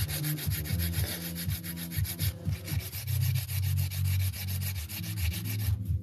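Hand nail file rubbing in quick back-and-forth strokes, several a second, across the edge of a glitter acrylic nail to shape it. The strokes pause briefly near the end.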